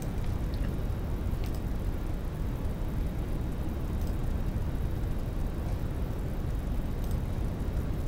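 Steady low background rumble and hum picked up by the narration microphone, with a few faint clicks.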